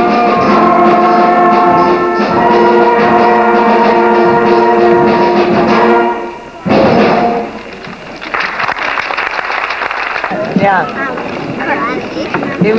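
School concert band holding sustained brass and woodwind chords that end with a short loud final chord about halfway through. Then comes a stretch of audience noise, with people talking near the end.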